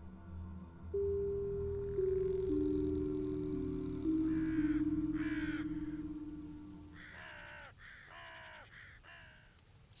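Short music sting of held, sustained notes stepping downward and slowly fading, with a bird cawing over it: two louder caws midway, then three fainter ones near the end.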